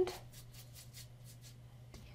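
Paintbrush strokes of acrylic paint on a stretched canvas: faint, repeated dry scratching over a low steady electrical hum.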